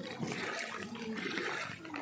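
Floodwater in a street, sloshing and splashing in uneven surges.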